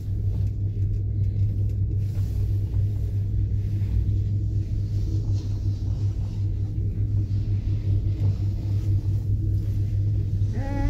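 Steady low rumble and hum heard from inside a moving ski-resort gondola cabin as it travels along the cable.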